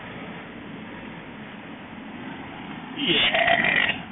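Steady road and engine noise inside a moving car's cabin; about three seconds in, a person's voice breaks in briefly.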